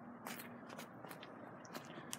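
A few faint footsteps scuffing on asphalt, soft and irregular.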